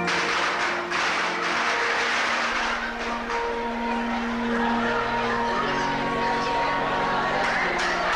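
Organ playing slow, held chords, with a loud rushing noise over it that starts suddenly at the outset.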